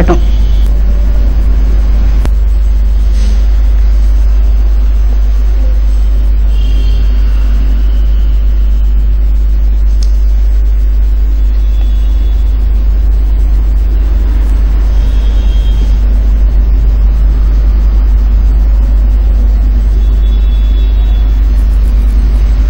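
A loud, steady low rumble with no speech over it. The same rumble runs under the narration either side, so it is the recording's own background noise rather than any event on screen.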